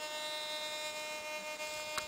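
A steady electrical hum made of several fixed, high-pitched tones held at an even level.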